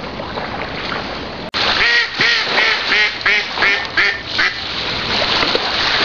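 Mallard ducks quacking: a run of about eight quacks in quick succession, starting about two seconds in. Before them there is a steady rushing noise that stops at a cut.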